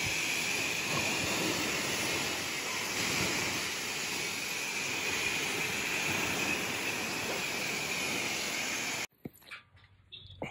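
High-pressure wand at a self-service car wash spraying water against a van's front bumper and grille: a steady hiss of spray with a thin high tone running under it. It cuts off suddenly near the end.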